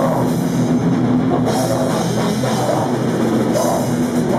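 Live heavy metal band playing: distorted electric guitars and a drum kit with cymbals, loud and unbroken.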